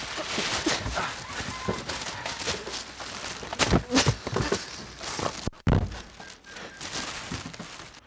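Scuffling and irregular thuds as a person is shoved into an SUV's rear cargo area, with rustling of clothing and crinkling plastic. The sound breaks off briefly about five and a half seconds in.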